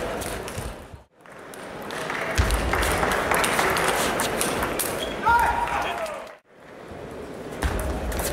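Table tennis ball being struck by the players' bats and bouncing on the table, a series of sharp clicks, over spectator chatter in a large hall. The sound drops out briefly twice, about a second in and again near the end.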